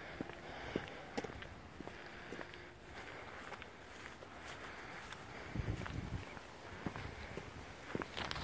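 Faint footsteps on a concrete driveway and walkway, about two steps a second. There is a brief low rumble about six seconds in.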